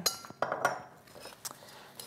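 Metal spoon clinking against a ceramic mixing bowl as it starts stirring sliced apples and squash: a few clinks in the first second, one with a short ring, and another a little past the middle.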